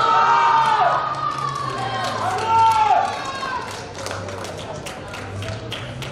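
Young voices shouting out on a rugby pitch: two loud drawn-out calls that fall in pitch, one at the start and another about two and a half seconds in. After them come a run of short sharp taps.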